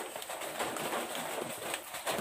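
Quiet background with a dove cooing faintly.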